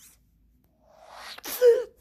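A child's breathy, sneeze-like vocal burst: near silence for about a second, then a short build-up of breath ending in a loud burst of voice near the end.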